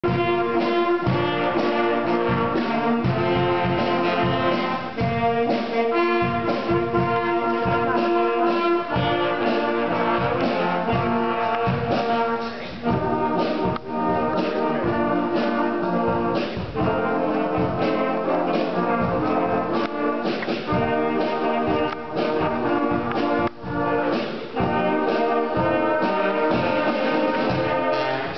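Brass fanfare band with drums playing a piece together: sustained chords broken by frequent short, accented notes.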